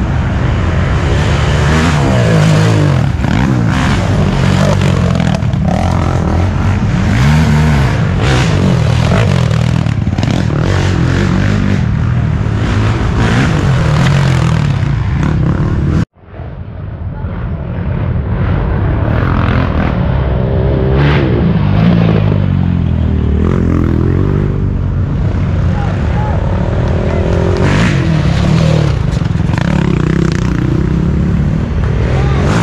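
Racing ATV engines revving up and down, with overlapping engine notes rising and falling. About halfway through the sound cuts out abruptly and fades back in over a second or two.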